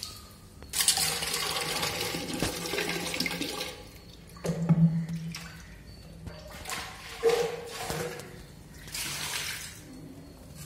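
Water gushing and splashing in several bursts, the first and longest lasting about three seconds, the later ones shorter, as a cartridge-filter housing bowl is emptied and rinsed at a tap.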